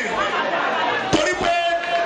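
A man's voice amplified through a microphone and PA system, with other voices chattering around it.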